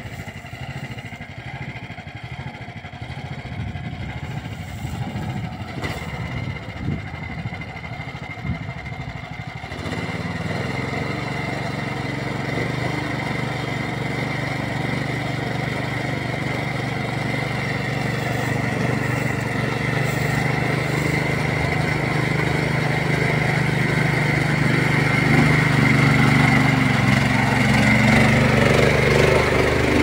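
Engine of a homemade karakat, a big-tyred amphibious ATV, running under way. It gets louder about a third of the way in and keeps growing louder as the machine comes closer.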